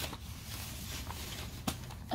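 Low room noise from someone moving about off-camera, with a single sharp click near the end.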